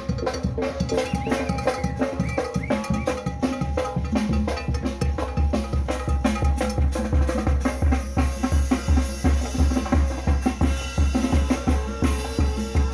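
A Zacatecas-style tamborazo band playing dance music: a steady booming bass-drum beat with snare, under sustained brass.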